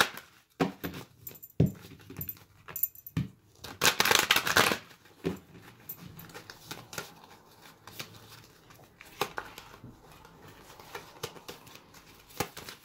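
A deck of oracle cards being hand-shuffled: scattered soft clicks and slaps of cards, with a louder rustling burst of cards sliding together about four seconds in.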